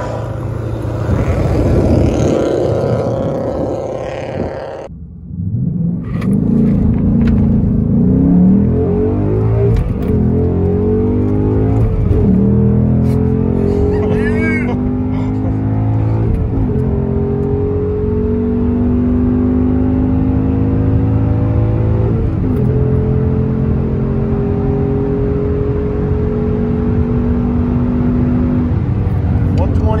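A 2017 Ford Mustang GT's 5.0 V8 at full throttle from a standing start, heard from inside the cabin. Its pitch climbs through each gear and falls at each manual upshift, the gears growing longer, on a half-mile run to about 125 mph. For the first five seconds, before a cut, a different car is heard driving past outside.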